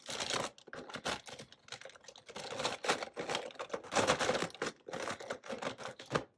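Plastic markers clattering against each other and against a plastic storage box as hands rummage through it, in a run of quick, irregular clicks and rattles.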